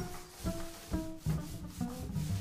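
Jazz background music with a beat about twice a second, over the rubbing of a paint roller spreading paint along a wooden bookcase panel.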